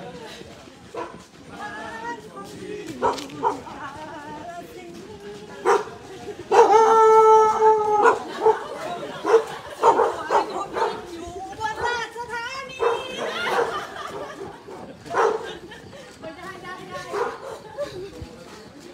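Voices of a group of runners chatting and calling out as they jog. About six and a half seconds in there is one loud, held call lasting about a second and a half, the loudest sound here.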